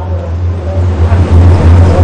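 Loud, steady low electrical hum on a phone-in line, with faint hiss and a faint voice above it. The caller's connection is breaking up, cutting in and out.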